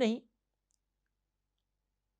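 A man's voice finishing a spoken word just as it opens, then near silence: studio room tone during a pause in speech.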